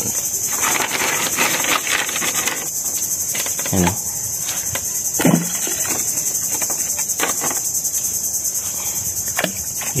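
Steady high-pitched chorus of insects, unbroken throughout.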